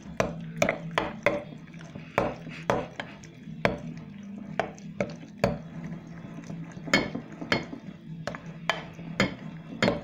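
A metal spoon stirring thick porridge with marmalade and grated cheese in a glass bowl, clicking against the glass at irregular moments, with soft mushy scraping between.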